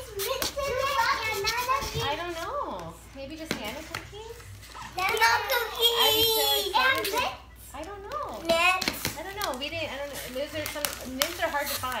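Young children squealing, shrieking and babbling excitedly without clear words, with a burst of high-pitched squeals about five to seven seconds in. Light knocks and rustles from a cardboard box being handled sound under the voices.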